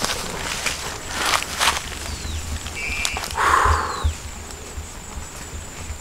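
Outdoor ambience: a few soft rustles and knocks, like steps on grass, then a couple of short, faint bird-like whistles and a brief hiss a little after the middle.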